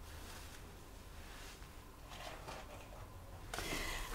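Quiet room with a low steady hum and a few faint rustles and light knocks of someone moving about and handling things, a little louder near the end.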